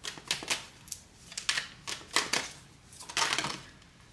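Tarot cards being handled: a run of sharp clicks and snaps as cards are pulled from a deck and laid on the table, with a denser cluster about three seconds in.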